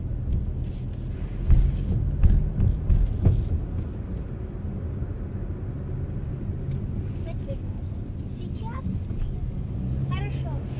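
Car driving on a winding road, heard from inside the cabin: a steady low rumble of engine and tyres, with a few louder thumps and surges in the first half.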